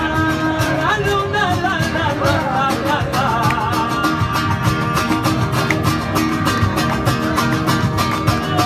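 Live flamenco-style song: male voices sing long, wavering notes over acoustic guitars strummed in a quick, even rhythm. The singing is strongest in the first three seconds.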